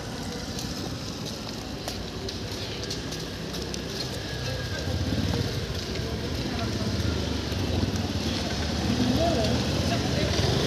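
Low, steady engine hum over outdoor street noise, growing gradually louder.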